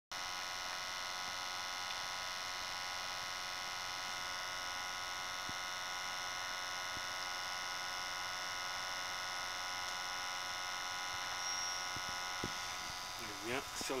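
Steady buzzing hum through an electronic acoustic water-leak detector, the amplified and filtered pickup of its ground microphone listening for a leak on a buried water pipe. It fades about a second before the end.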